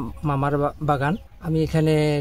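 A man's voice speaking, only speech.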